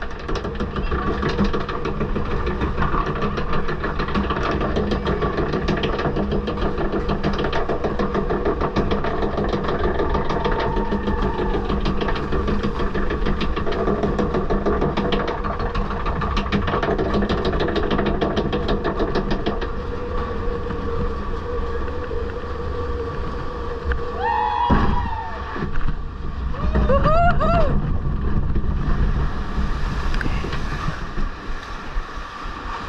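Log flume boat riding the ride's mechanism with a steady, loud clattering and hum. Near the end, voices whoop twice.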